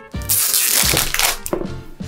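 Rustling and scraping as a cardboard gift box and its braided cord are handled: one dense, noisy burst lasting just over a second near the start.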